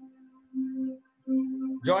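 A pure, steady musical note near middle C, held in short stretches with brief gaps, coming over a video-call connection; a voice comes in near the end.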